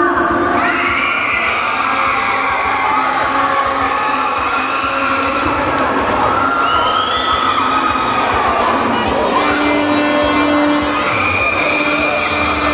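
A crowd of students cheering and shouting, with music playing.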